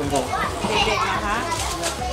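Speech: an adult's question and a woman's reply in Thai, with children's voices in the background.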